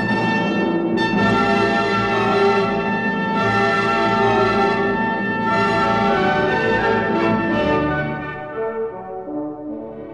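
Background music with brass and orchestra playing sustained chords, thinning out and getting quieter near the end.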